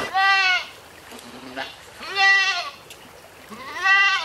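A goat bleating three times, each call about half a second long and coming about every two seconds, the last running past the end.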